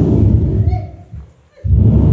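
Loud, heavily distorted low booming from an overdriven loudspeaker, in two bursts with a short break about a second in.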